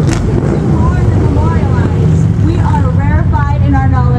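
A woman's voice reading a poem aloud into a microphone, over a steady low motor drone, with one sharp click right at the start.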